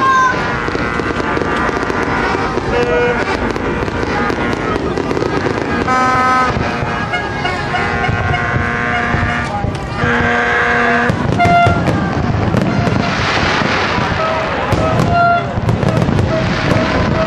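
Fireworks display: shells bursting with sharp bangs, and crackling that swells near the end, over crowd voices.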